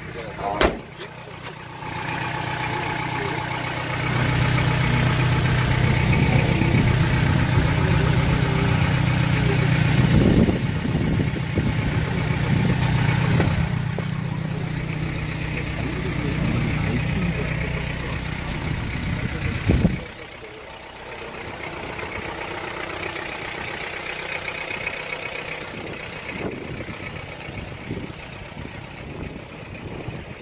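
Hyundai Starex's 2.5-litre turbo-diesel engine idling steadily, heard close to the exhaust. A sharp knock comes about a second in. The idle is loudest through the middle, then drops suddenly about twenty seconds in and runs on quieter.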